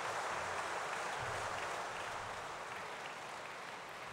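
Large audience applauding, the applause slowly dying down.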